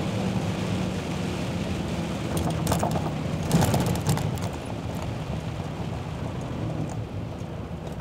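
Volvo truck's diesel engine running steadily, heard from inside the cab, with rain on the windshield. A quick cluster of clicks and taps comes about three seconds in.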